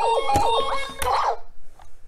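Fisher-Price Code-A-Pillar toy powering on and playing its start-up jingle: a short electronic tune of quick sliding chirps that lasts about a second and a half, then stops.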